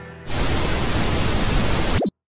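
Steady burst of static hiss, like a detuned TV, starting a few tenths of a second in and cutting off suddenly near the end.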